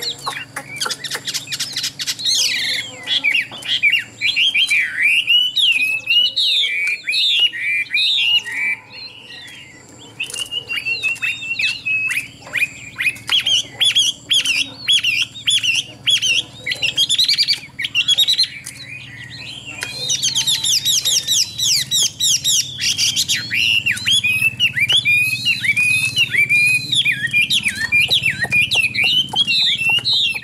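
Chinese hwamei singing a loud, varied song of rich whistled phrases that change from one to the next. There are short pauses about nine and nineteen seconds in, and a rapid run of high notes around twenty seconds in.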